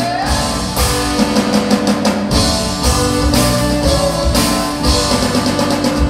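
Rock band music, with guitar and drum kit to the fore.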